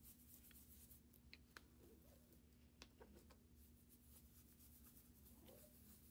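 Near silence: faint brushing of a brush swirling pearl pigment powder over inked cardstock, with a few soft ticks.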